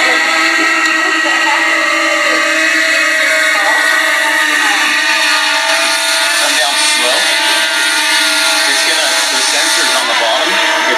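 Small quadcopter drone hovering, its propellers giving a steady whine of several tones at once that wavers slightly in pitch as it holds position.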